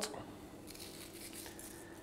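Faint, soft handling sounds of sea salt being pinched from a small bowl and sprinkled over sliced root vegetables in a cast-iron casserole.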